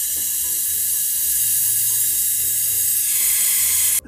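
Pure oxygen rushing from a compressed-gas cylinder into a glass flask: a loud, steady hiss that turns slightly higher about three seconds in.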